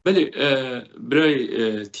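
A man speaking, with no sound besides his voice.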